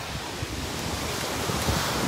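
Ocean surf washing onto the beach, a steady rushing wash that grows slightly louder, with wind buffeting the microphone in low gusts.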